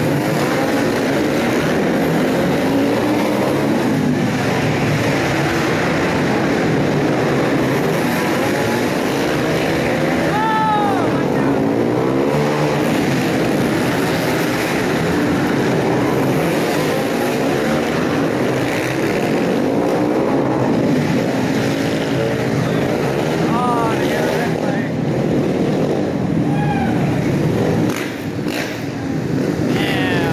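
A pack of flat-track racing motorcycles running hard on a tight indoor short track, engines revving up and down continuously, with individual bikes passing close in clear rising and falling sweeps in pitch.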